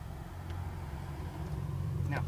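Steady low rumble like a vehicle engine running, growing slightly louder, with a faint click about half a second in.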